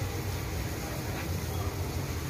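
Steady low rumble of a gas stove burner under a pan of peas and masala being fried, with a spatula stirring through the thick mixture.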